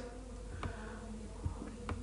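A faint, steady buzzing hum of background noise during a pause in speech, with two faint clicks, one just past halfway and one near the end.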